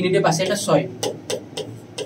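A man's voice speaking in short phrases, then a few short ticks in the second half.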